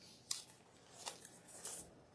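Three faint, short rustles and clicks of someone moving and handling things, about half a second to a second apart.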